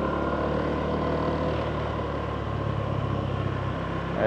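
Motorbike engine running steadily as the bike rides along, with a constant hum and road noise.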